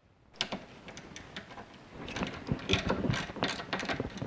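Hand screwdriver with a T10 security Torx bit backing screws out of a DeWalt 12V NiCad battery pack's plastic case: a run of small clicks and ticks that grows louder about halfway through.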